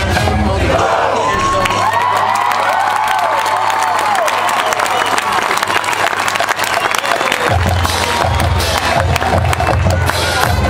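A marching band's brass music ends at the start and gives way to a crowd cheering, whooping and applauding from the stands. About three-quarters of the way through, a low rhythmic drumming starts up under the cheering.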